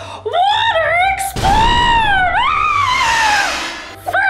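A woman's high voice, not in words: a short vocal phrase, then from about a second and a half in a long, high, wavering note that dips, rises and slowly falls away, fading near the end.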